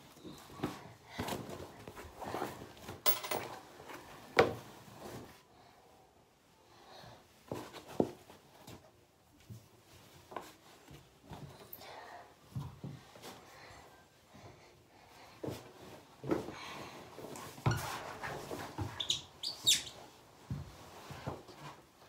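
Cloth rustling with scattered knocks and thumps as a pile of hats and hoodies is handled in an empty bathtub, with a brief high squeak near the end.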